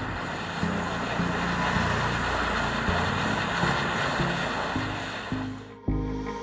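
Jeweller's gas torch flame hissing steadily while heating a gold ring shank to flow solder into the joint, then cutting off shortly before the end.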